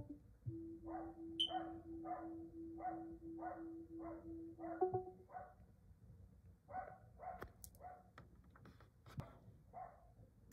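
Faint animal calls: short repeated cries, about two to three a second, in two runs, with a steady low hum under the first run.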